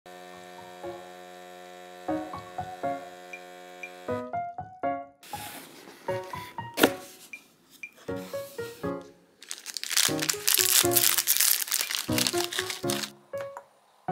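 Soft background piano music, over which clear plastic wrappers on individually packed brownies are crinkled and torn open. There is a sharp crackle a little before the middle, and a long stretch of loud crinkling near the end.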